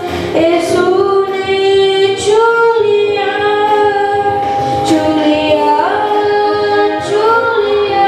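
A boy singing a slow devotional song solo into a handheld microphone. He holds long notes and slides between pitches.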